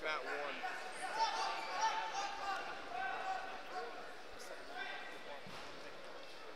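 Voices calling out across a gym, some held for about a second, with a few soft low thuds in the second half.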